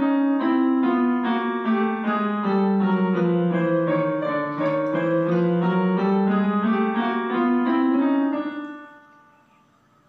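Portable electronic keyboard on a piano voice, played with both hands: a scale exercise of evenly paced notes stepping down and then back up. The notes stop about eight and a half seconds in and fade away.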